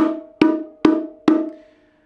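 Four open strokes on the low drum (hembra) of a pair of bongos, played with all the fingers, evenly spaced a little under half a second apart, each ringing with a low tone and fading.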